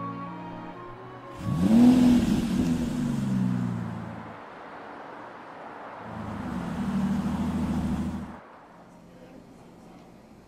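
Music, then two car pass-bys. The first and loudest comes about a second and a half in, its engine note rising in pitch before it fades away by about four seconds. The second begins around six seconds and cuts off suddenly near eight and a half seconds.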